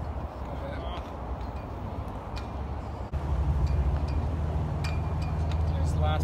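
Outdoor background noise: a steady low rumble that gets louder about halfway through, with faint distant voices and a few light clicks.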